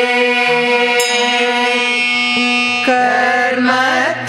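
Male and female voices chanting a Sanskrit hymn in Carnatic style, holding one long steady note for about three seconds, then moving to a new note near the end.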